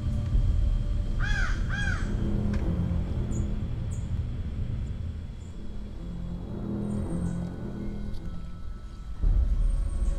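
A crow cawing twice, about a second in, over background music with low notes that grows louder near the end.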